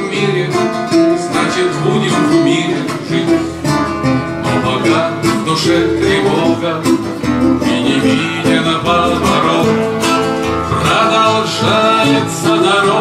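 Two acoustic guitars playing together in a continuous plucked passage.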